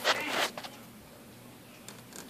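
A short rasping scrape in the first half second, then near-quiet with a faint click near the end: plastic toy figurines being handled and shuffled across a tabletop.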